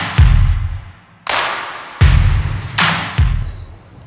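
Intro music for a film-countdown animation: three heavy booms, each with a rush of whooshing noise that dies away over about a second.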